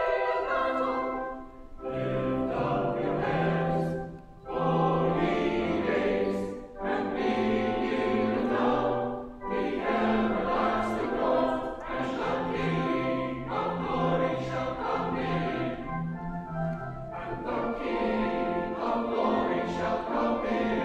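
Mixed-voice church choir singing an anthem, with short breaks between phrases in the first half.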